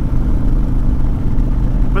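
Honda Fury's 1312 cc V-twin running steadily while the bike cruises, heard from the saddle as a constant low drone.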